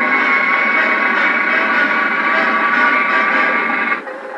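Loud, steady roar of a jet aircraft engine with a dense mix of whining tones. It cuts in abruptly and stops abruptly at the end.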